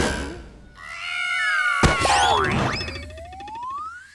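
Cartoon sound effects over music: gliding whistle-like tones, a sharp thunk about two seconds in, then a long rising whistle near the end as something is launched into the air.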